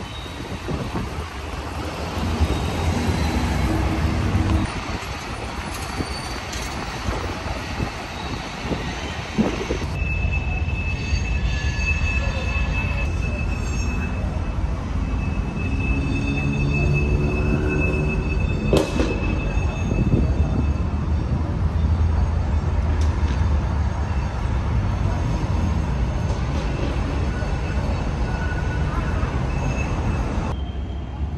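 A train rolling over a railroad overpass, a steady rumble throughout. A thin, high wheel squeal holds for several seconds in the middle.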